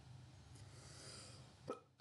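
Near silence: faint room tone with a soft breath, then one brief short throat or mouth sound near the end.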